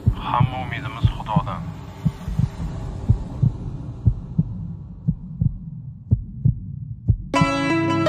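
Low, dull thuds like a heartbeat, about three a second and slowing near the end, over a low hum. Music with plucked notes starts near the end.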